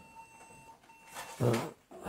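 Quiet room tone with a faint, thin, steady electronic whine, then a man's short spoken "naʿam" (yes) a little over a second in.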